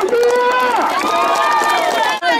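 A group of voices singing in long, held notes that bend and slide, over a crowd's hand clapping.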